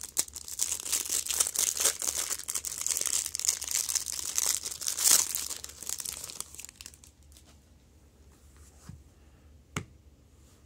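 Clear plastic wrapper crinkling and tearing as it is pulled off a stack of baseball cards, loudest about five seconds in and dying away after about seven seconds. Two light taps near the end as the cards are set down.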